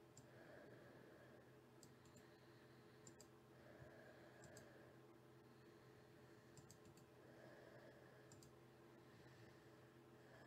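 Near silence with faint clicking at a computer: a handful of scattered clicks, several in quick pairs, over a low steady hum.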